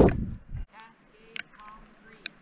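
A snowboard scraping to a stop over thin early-season snow on a hard base, with wind on the microphone, cutting off about half a second in. Then it is quiet apart from a couple of faint clicks.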